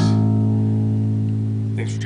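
Music Man StingRay electric bass plucked once, its single low note ringing on and slowly fading, played through an Ampeg SVT amp and 8x10 cabinet.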